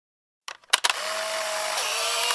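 A few sharp clicks about half a second in, then a steady whirring hiss with a faint steady hum through it.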